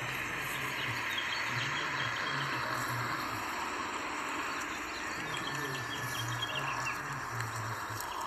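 Steady outdoor ambience of insects chirring, with faint bird chirps and an on-and-off low hum underneath.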